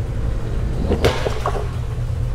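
Water splashing in a saltwater pond as a predatory fish strikes at the surface: one sharp splash about a second in, with a few smaller ones after it, over a steady low rumble.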